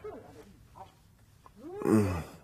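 A man's long, low groan near the end, rising and then falling in pitch, like a lazy stretch or yawn, after a mostly quiet stretch.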